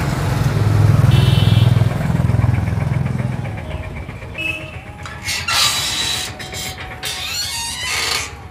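A passing motor vehicle's engine hum, loudest about a second in and fading out after about three and a half seconds. Several short noisy bursts follow in the last few seconds.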